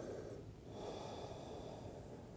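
Faint breathing of a person resting in child's pose: one breath trails off about half a second in and the next begins right after.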